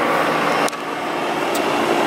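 A steady mechanical hum with a few constant tones in it, and a single click under a second in.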